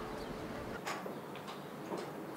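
A few faint, sharp clicks from a door's handle and latch as the door is opened, over quiet room tone.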